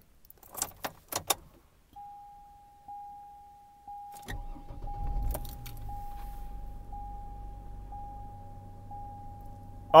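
Ignition key jangling and clicking in the 2005 GMC Envoy's ignition, then a dashboard warning chime dinging about once a second. About four seconds in the engine cranks and starts, settling into a steady idle under the continuing chime.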